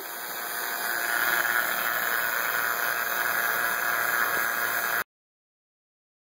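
Robinair VacuMaster 5 CFM two-stage vacuum pump running steadily while evacuating an air-conditioning system; it grows a little louder about a second in and the sound cuts off suddenly near the end.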